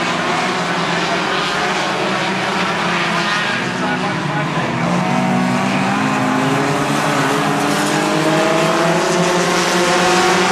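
A pack of Hornet-class four-cylinder compact race cars running together on a paved short oval, several engines droning at once. Their pitch rises in the last few seconds as the cars accelerate.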